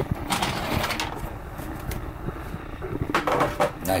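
Handling noise from a dental table's tray being gripped and moved: a few knocks and clicks with rubbing in between, the busiest about three seconds in.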